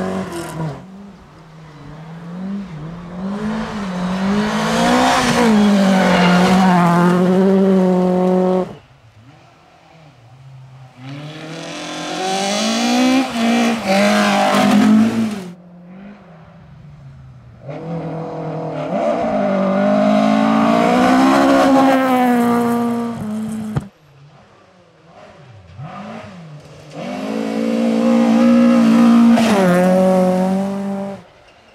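Rally cars, among them a Volvo 240, driven hard on a gravel stage. The engines rise and fall in pitch through the gears in about four separate passes, each cutting off suddenly.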